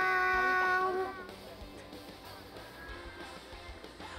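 A child's drawn-out "miau" held on one steady pitch, on a single breath for as long as possible. It cuts off about a second in.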